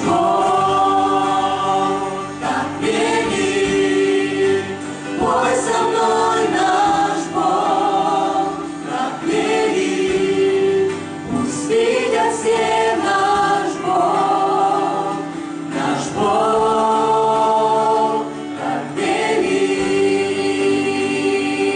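A choir of men's and women's voices singing a Christian worship song in unison, holding sustained notes in phrases a few seconds long.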